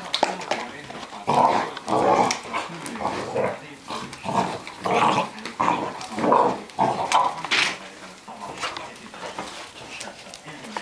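Two puppies play-fighting, growling and yapping in a rapid run of short bursts, about two a second, that stops a couple of seconds before the end.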